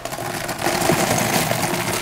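Ice cubes poured from a plastic bag into the wooden bucket of a salt-and-ice ice cream maker, a steady dense clatter as they tumble in around the metal canister.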